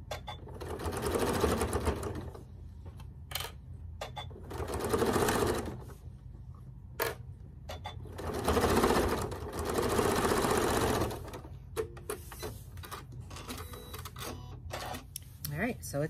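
Domestic sewing machine stitching a quilt border seam in three runs, the last and longest about three seconds, stopping in between. Sharp little clicks fall in the pauses.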